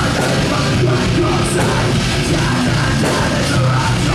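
Metalcore band playing live: distorted guitar and bass, drums with cymbals, and a vocalist screaming into the microphone. The sound is loud and dense throughout.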